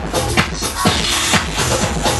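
Electronic dance music with a steady four-on-the-floor kick drum about twice a second, played by a DJ on CDJ decks and a mixer.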